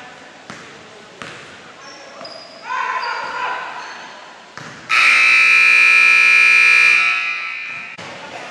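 Basketball scoreboard horn sounding once, a loud steady tone for about two seconds, as the game clock hits zero to end the period. Its tone rings on in the hall after it stops. Before it come a few basketball bounces on the hardwood floor and shouting voices.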